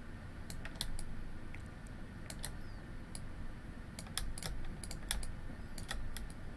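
Scattered clicks of a computer keyboard and mouse, some in quick pairs, over a low steady hum.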